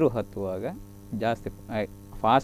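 A man talking over a steady low electrical mains hum.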